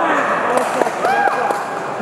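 Men's voices shouting from the cage side and crowd during an MMA bout, a few long calls that rise and fall, over the steady murmur of a hall full of spectators.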